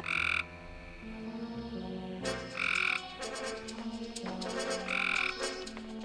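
Frog croaking three times, each croak short and spaced about two and a half seconds apart, over background music with held low notes.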